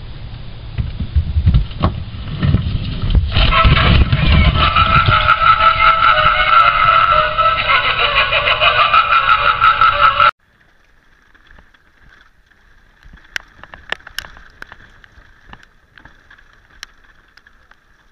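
Knocks and thumps against a plastic wheeled trash bin, then from about three seconds in a motion-activated Halloween clown prop sounding off loudly with a pitched, voice-like sound track. The track stops abruptly about ten seconds in, leaving faint clicks.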